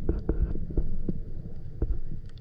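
Muffled, low underwater rumble through a submerged action-camera housing, with irregular soft knocks from water moving against and handling of the housing.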